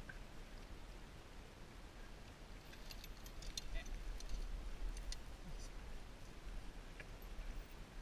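Landing net with a freshly netted fish being lifted into a small fishing boat: a scatter of light clicks and rattles about three to five seconds in, over a low steady rumble.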